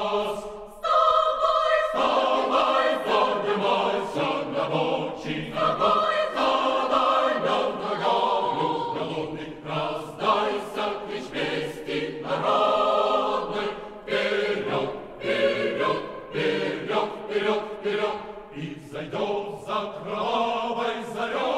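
A choir singing in full sustained chords, phrase after phrase, with a short break about a second in.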